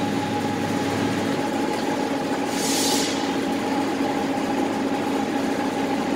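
Steady hum of machinery on a chestnut-processing line, with two constant tones, and a short hiss about two and a half seconds in.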